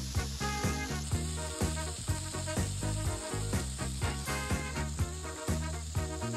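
Background music with a steady beat and bass line. Under it, the sizzle of a beef burger patty frying in a hot cast-iron skillet.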